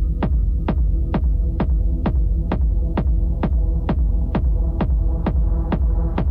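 Techno from a DJ set: a heavy, sustained bass drone with a steady pulse of short, sharp hits about twice a second, each falling quickly in pitch.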